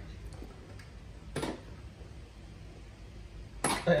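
A single short clack about a second and a half in, from a hand handling a metal 4-port AV switch box and its RCA cables, over low room tone.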